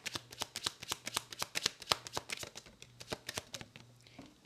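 A tarot deck being shuffled by hand: a rapid patter of crisp card flicks that thins out toward the end.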